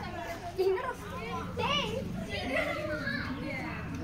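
Several children's voices chattering and calling out over one another in Tamil, high-pitched and overlapping.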